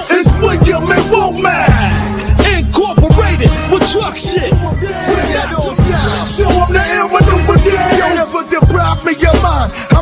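Hip hop track: a beat with heavy bass under a rapped vocal.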